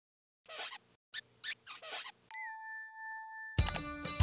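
Logo-animation sound effects: a few short swishing bursts, then a single bright chime that rings at one pitch for about a second. Background music with a beat starts near the end.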